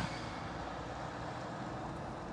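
Steady vehicle noise heard from inside a van's cabin, an even low rumble and hiss.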